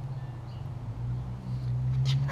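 Wind rumbling on the microphone over a steady low hum.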